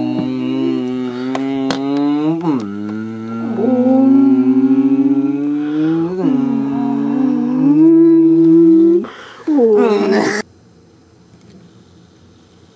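A man's voice humming long, low held tones that climb slightly and step in pitch a few times, then stop abruptly near the end.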